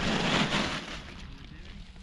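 Plastic carrier bag rustling as a knotted football goal net is handled and pulled out of it, loudest in the first second and then fading.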